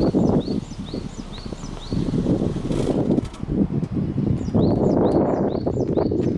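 Subaru Forester's flat-four boxer engine running at the tailpipe, heard as a low rumble that swells and drops irregularly with wind on the microphone. A small bird chirps a short rising note about twice a second throughout, pausing for about a second midway.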